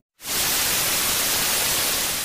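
TV static sound effect: a steady hiss of white noise that starts abruptly a fraction of a second in, after a brief silence.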